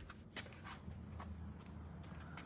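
Faint handling noise: a few light clicks and knocks and footsteps as a person moves around a car, over a low steady hum.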